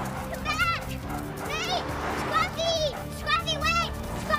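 A young girl's high-pitched, excited calls, a run of short cries rising and falling in pitch, over background music.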